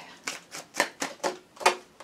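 Tarot cards being handled and a card pulled from the deck: a quick series of about six sharp card clicks and snaps, the last one the loudest.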